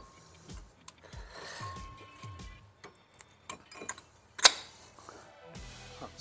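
Light metallic clicks and knocks of brake pads being seated in a Citroen C4 Picasso's front brake caliper, with one sharp click about four and a half seconds in, over faint background music.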